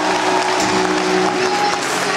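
Audience applauding over the slow song the skater performs to, its sustained notes held steady beneath the clapping.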